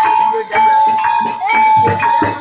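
Live Javanese jaranan ensemble music accompanying the buto dance: one high note held with a short upward slide midway, over light percussion strokes, the heavy drumming easing off.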